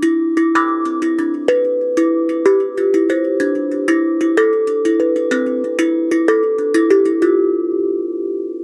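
Steel tank drum made from a gas cylinder, its rectangular cut tongues in a C major scale, struck with the fingers in a quick melodic run of about four notes a second. Each note is a clear bell-like ring that overlaps the next, and the last notes are left ringing near the end.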